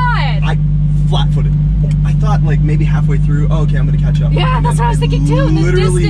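Lamborghini Huracán Evo's V10 running, heard inside the cabin as a steady low drone, with people talking and laughing over it.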